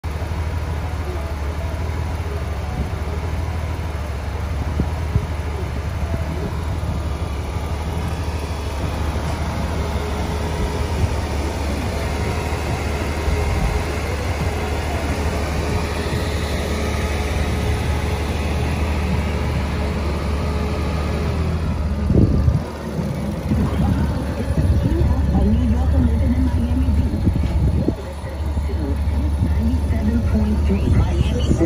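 Honda Gold Wing GL1800's flat-six engine idling with a steady low hum, a little louder and less even in the last several seconds.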